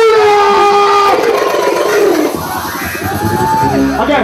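Live reggae-dancehall show: the beat cuts out and a loud long held note, then a second note rising and falling, rings out over a crowd cheering. The bass comes back in a little past halfway.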